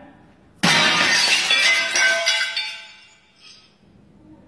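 A sudden loud crash about half a second in, bright and ringing, fading away over about two seconds, with music.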